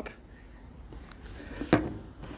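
Quiet room tone, broken by a single short knock about three-quarters of the way through.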